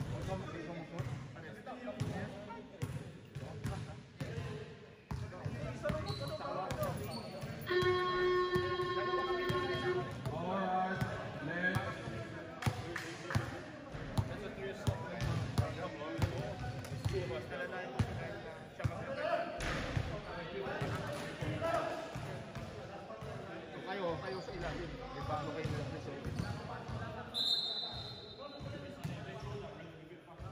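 A basketball bouncing on a sprung indoor hall court under player chatter, with a steady buzzer tone lasting about two seconds some eight seconds in, the kind a scoreboard horn gives. A short high whistle sounds near the end.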